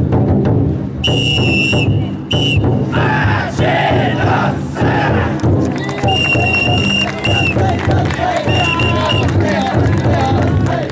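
Taikodai festival drum float: its big taiko keeps up a steady beat while the crowd of bearers shouts and chants as they hoist the float overhead. A whistle cuts through in long blasts, first about a second in and again near six seconds, with shorter ones after.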